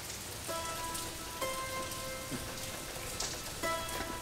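Steady rain falling. Soft sustained notes of film-score music come in about half a second in and shift chord a couple of times.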